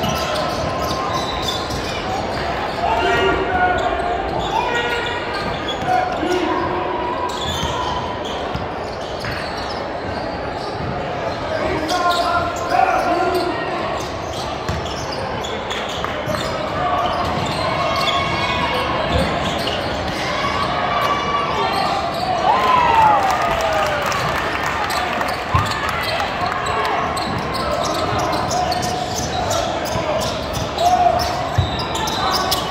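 A basketball bouncing on a hardwood gym floor during play, with voices of players and spectators, echoing in a large hall.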